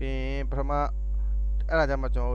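Steady low electrical mains hum, with a voice speaking in short bursts over it near the start and again near the end.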